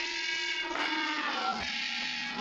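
Electronically processed, robotic-sounding audio: a buzzy chord of many steady tones, its lowest tone stepping down in pitch about one and a half seconds in.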